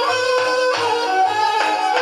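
Music playing back from a cassette on a Sony CFS-85S boombox, through its three-way speakers: a melodic lead of held and sliding notes over a repeating bass line.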